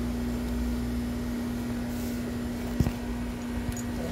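A steady low mechanical hum, with one sharp click a little under three seconds in.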